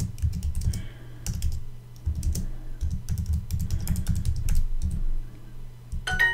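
Typing on a computer keyboard: a quick, irregular run of key clicks with short pauses, thinning out near the end.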